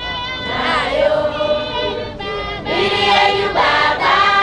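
A women's choir of a Johane Masowe church congregation singing a hymn together, many voices at once.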